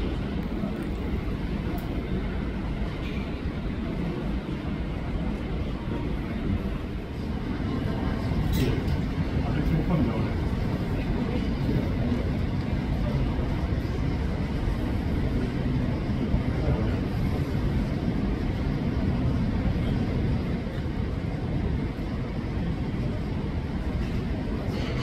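Low, steady rumble of jet airliners on the runway and apron, muffled through terminal glass, growing a little louder about seven seconds in. Indistinct voices are mixed into the background.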